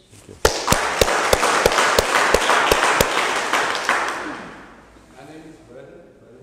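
Small audience applauding in a hall. One person near the microphone claps sharply about three times a second. The applause starts about half a second in and dies away after about four seconds.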